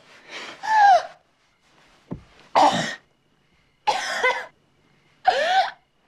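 A person's voice letting out a run of short, harsh gasps and coughs, about one a second, each with a bending pitch: a jolt of breath after an adrenaline shot to the heart revives someone from an overdose. A brief knock comes about two seconds in.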